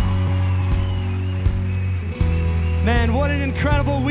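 Live worship band music: a steady low bass and sustained keys over regular kick-drum beats, with a voice coming in singing about three seconds in.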